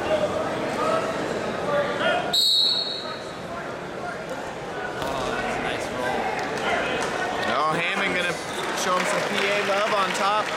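A referee's whistle is blown once, briefly, about two seconds in: the signal to start wrestling from the referee's position. Behind it is the chatter of a gym crowd, with shouts near eight seconds in and a few thumps.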